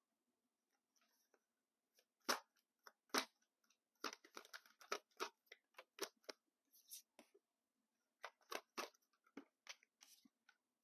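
A tarot deck being shuffled by hand close to a clip-on mic: irregular card clicks and papery scrapes in bursts. Two louder snaps come a little after two and three seconds in.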